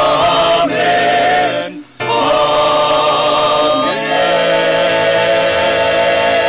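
A small group singing a hymn into microphones, holding long, wavering notes, with a brief break for breath just before two seconds in.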